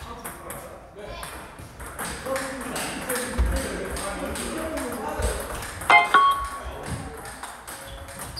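Table tennis rally: a celluloid/plastic ball clicking off bats and the table in quick succession, with more ball clicks from other tables and voices in a large hall. About six seconds in comes a louder, sharper knock with a brief ringing tone.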